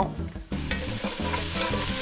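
Sliced garlic and chopped onions sizzling in hot oil in a Dutch oven. The sizzle builds about half a second in and then holds steady.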